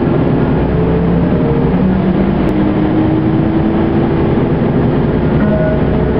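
A moving road vehicle heard from inside: a steady engine and road rumble, with a few low engine tones drifting slowly in pitch.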